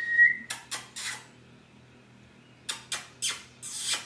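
A person whistling one steady note, which stops just after the start. Then come short, sharp hissing noises: three within the first second and four more in the last second and a half, the last one longer.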